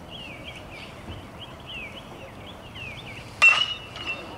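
Small birds chirping steadily. About three and a half seconds in comes a single sharp metallic ping of an aluminium baseball bat striking the pitched ball, ringing briefly.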